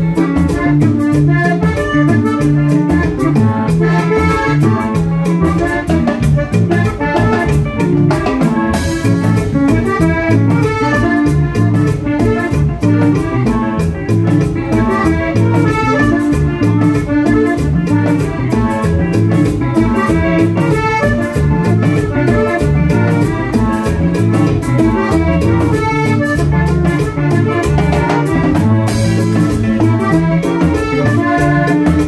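A live Panamanian típico band playing an upbeat Latin tune: red button accordion carrying the melody over timbales and congas, with a cymbal crash about nine seconds in and another near the end.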